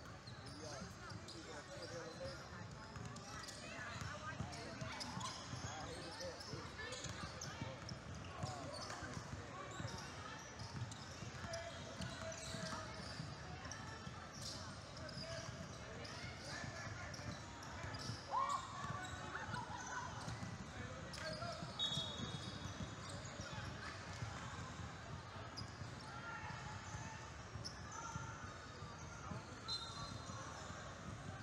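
Basketball being dribbled and bounced on a hardwood court during play, with players' and spectators' voices in a large gym.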